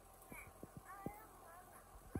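Four or five soft, short knocks as a shovel blade is shifted and bumped against sandy ground, with a faint voice in the background.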